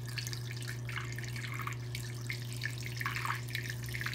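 Water pouring from a gallon jug through a funnel into a balloon, an irregular trickling and gurgling, over a steady low hum.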